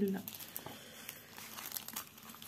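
Clear plastic wrapping crinkling as hands handle it, a light uneven crackle.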